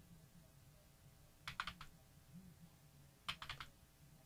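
Faint computer keyboard typing: two quick bursts of a few keystrokes each, about a second and a half in and again near the end, as numbers are typed into coordinate boxes.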